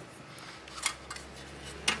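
Steel drive cage clicking against the computer's sheet-metal case as it is handled, two sharp metallic clicks about a second apart, the second, near the end, the louder.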